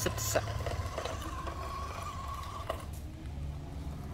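Radio-controlled toy Lamborghini's small electric motor and gears whining steadily as it drives, with a few sharp clicks near the start; the whine stops about three seconds in.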